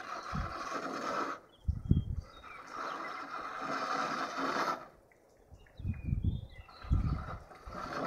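Outdoor wind noise on the microphone: irregular low rumbling gusts over a steady hiss that drops out twice.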